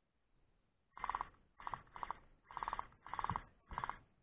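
Electric gel blaster firing six short full-auto bursts over about three seconds, each a rapid buzzing rattle, starting about a second in.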